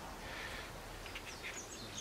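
Faint outdoor background with a few short, high bird chirps.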